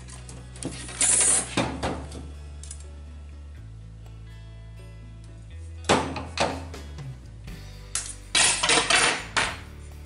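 Small bolt cutters cutting a 1/8-inch stainless steel welding rod in two, with sharp metal clicks and clinks of the cutters and rod being handled, in two clusters: about a second in, and again from about six to nine and a half seconds. Steady background music runs underneath.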